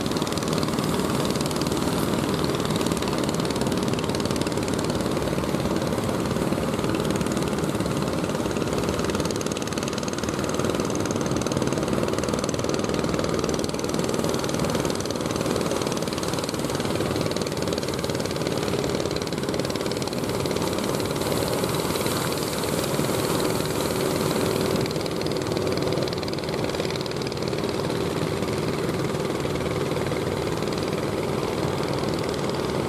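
Inboard engines of motorised wooden fishing boats running steadily as they come in through the surf, with a low rumble and a knocking beat mixed into sea noise. A higher hiss swells briefly about two-thirds of the way through.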